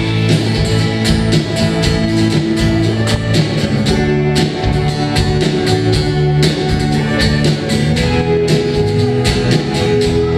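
Live rock band playing an instrumental passage: acoustic and electric guitars, bass and keyboard over a steady drum beat, with no singing.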